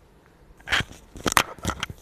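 Clicks, scrapes and rustling of a clip-on microphone being handled close up, starting about half a second in as a quick irregular run of sharp crackles.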